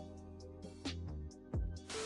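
Quiet background music of held chords, with a few short notes that fall in pitch. Just before the end, a burst of television-static hiss starts.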